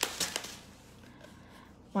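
A few brief light clicks of handling in the first half-second, then a quiet stretch of faint room tone.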